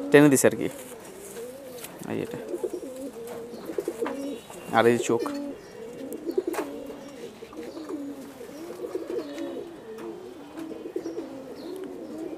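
Several domestic pigeons cooing continuously, low warbling calls that rise and fall and overlap one another.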